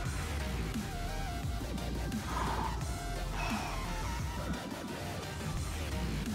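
Background electronic dance music with a steady low beat and a held synth melody, with a few short breathy puffs over it.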